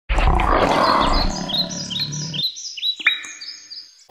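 A lion's roar sound effect for about two and a half seconds that cuts off abruptly, overlaid with a run of quick, high rising sweeps. There is a sharp ringing hit about three seconds in.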